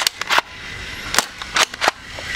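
Sharp plastic clicks and snaps, about six in all, from a Nerf Elite 2.0 Technician pump-action foam dart blaster being primed and fired. There is a quick cluster at the start and another from just past a second in.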